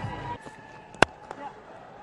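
Background music with a beat stops early on, leaving quiet match-broadcast ambience. A single sharp click comes about a second in.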